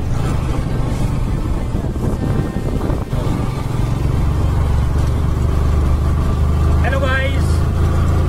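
Motorcycle riding along the road: a steady low wind rumble on the phone's microphone over the running engine. A short burst of voice comes near the end.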